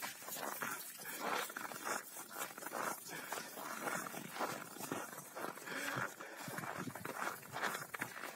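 Irregular crunching footsteps on snow, several a second, from rottweilers running about the snow.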